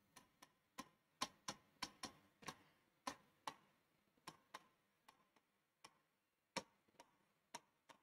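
Faint, irregular clicks of a stylus pen tapping and scratching on the glass of a touchscreen board as words are handwritten on it, a couple of taps a second, denser in the first few seconds.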